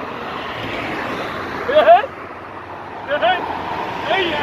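A car passing on the street, a steady rush of engine and tyre noise that drops away about halfway through, with short exclamations from a man over it.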